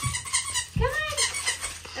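Corgi puppies vocalizing as they play: a few short high whines and yips that rise and fall, the clearest about a second in.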